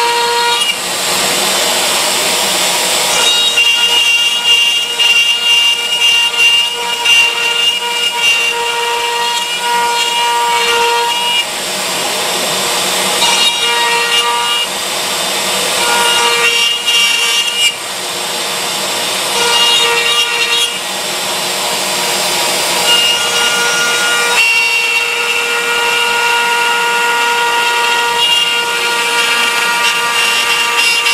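CNC router spindle whining steadily as a quarter-inch end mill pockets an eighth of an inch into a wooden lid. The cutting noise swells and fades every few seconds as the bit moves through the wood.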